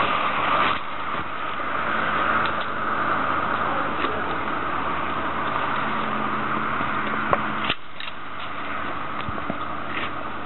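Steady road traffic noise with a low engine hum that drops off suddenly about eight seconds in. A few sharp clicks are heard over it, from a pole pruner's blade snipping crepe myrtle shoots.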